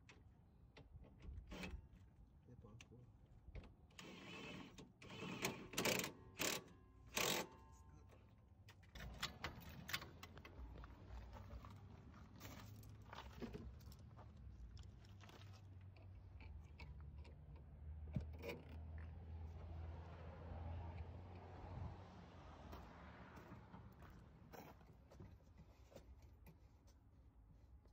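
Metal tools and suspension hardware clinking and rattling during coilover work, with a cluster of sharp clanks about five to seven seconds in. After that, quieter handling noise over a faint steady low hum.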